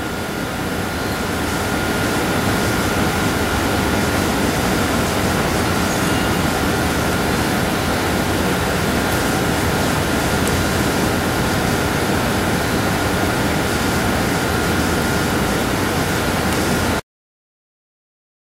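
Steady rushing noise with a faint, thin high whine running through it; it swells slightly over the first couple of seconds and cuts off abruptly about a second before the end.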